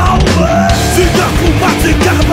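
Punk hardcore band playing a song at full volume: distorted electric guitars, bass and hard-hit drums, loud and dense throughout.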